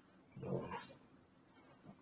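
A short, faint vocal sound about half a second in, otherwise near silence.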